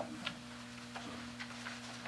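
Quiet meeting-room tone: a steady low hum with a few faint, short ticks.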